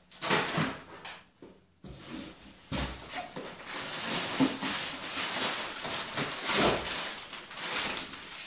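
Plastic packaging and cardboard rustling and crinkling as bagged soft goods are dug out of a large shipping box, with two dull knocks about three and seven seconds in.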